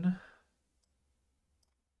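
A couple of faint computer-mouse clicks in near silence.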